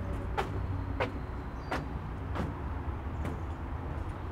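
Footsteps on a wooden boardwalk, five even steps at a walking pace, over a steady low rumble.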